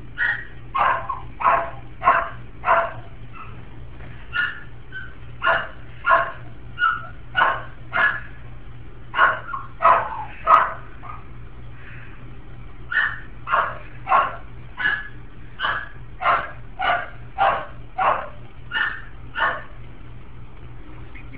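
A duckling giving short, loud, bark-like calls over and over, about one and a half a second, with a brief pause about halfway through. A steady low hum runs underneath.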